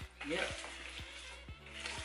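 Wire whisk stirring a dry flour and spice mix in a bowl, a soft scratchy rasp, over background music with a steady beat.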